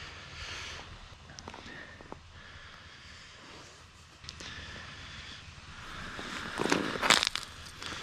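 Handling noise from a fishing line jigged by hand over an ice hole: low rustling with a few small clicks, and louder rustling bursts near the end.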